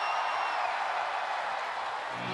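Arena crowd cheering and applauding.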